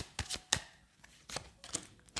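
A deck of tarot cards being shuffled by hand: a quick run of sharp card snaps and slaps, a short pause, then a few more near the end.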